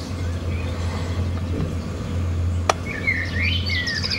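Small birds chirping a few short calls near the end, over a steady low rumble, with one sharp click partway through.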